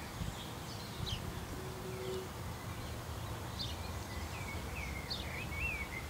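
Small birds chirping with short, quick calls, more frequent in the second half, over a steady low background rumble of outdoor noise.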